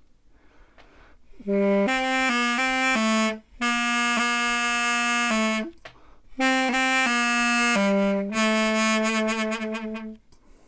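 A mey, the Turkish double-reed pipe, playing one line of a folk tune slowly, in three short phrases, starting about a second and a half in, with brief breaks between the phrases.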